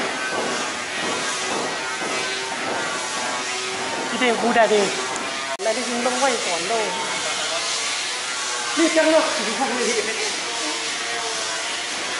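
Short bursts of people talking, about four, six and nine seconds in, over a steady background hiss.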